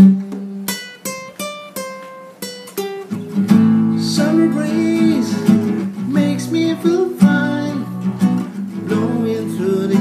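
Classical guitar played solo: a run of single plucked notes in the first few seconds, then strummed chords for the rest.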